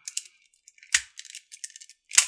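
Plastic beads of a Hasbro Atomix moving-bead puzzle clicking as they are pushed along its rings: a few light clicks, with a sharper one about a second in.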